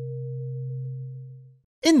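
Steady electronic hum made of a low tone and a higher thin tone, fading out about a second and a half in.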